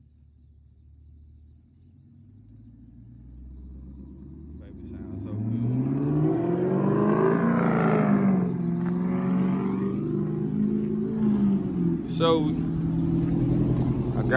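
Red Chevrolet Camaro driving off along the street. Its engine is faint at first and grows loud about five seconds in as it accelerates, the pitch climbing. It then settles to a steadier note as the car carries on past.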